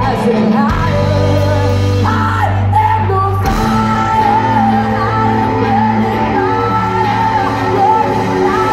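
Live hard rock band playing in a large hall: electric guitars, bass and drums under a woman's belted lead vocal, which holds one long wavering note from about halfway through.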